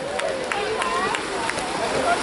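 Water splashing as several swimmers sprint across a pool, with a few sharp slaps of arms and hands hitting the water and indistinct shouting voices over it.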